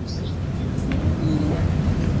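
Steady low rumble of room and microphone noise, with a faint click or two near the middle.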